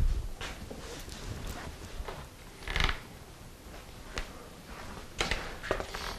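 Quiet kitchen with faint handling sounds: a few light knocks and clicks, and one short scrape-like rustle about three seconds in.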